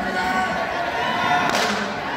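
Steady crowd chatter echoing in a large hall, with one short, sharp swish about one and a half seconds in as a wushu performer swings a long staff.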